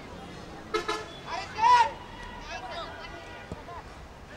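Footballers shouting to each other on the pitch: a short call, then a louder high-pitched shout about a second and a half in, followed by fainter calls.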